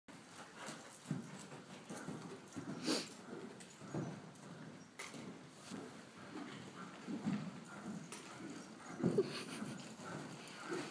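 A horse's hoofbeats, faint and irregular, with scattered dull thuds and a few sharper knocks.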